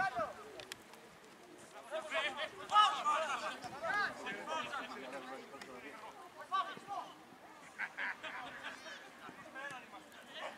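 Voices calling and shouting across a football pitch during play, several at once at times, the loudest about three seconds in.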